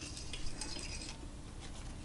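Faint handling noises: light metal clinks and rubbing as small metal dowel pins are fitted over the cylinder studs of a GY6 scooter engine.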